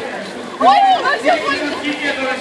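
Crowd voices chattering in the street, with a man's short exclamation "oy" about half a second in.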